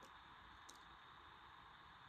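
Near silence: faint steady hiss from the recording, with one tiny click less than a second in.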